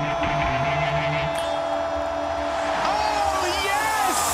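Intro sting of electronic sound design: a low drone and a held higher tone, with pitch glides bending up and down near the end.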